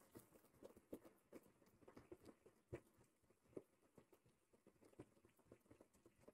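Near silence: room tone with a dozen or so faint, irregular short taps and clicks.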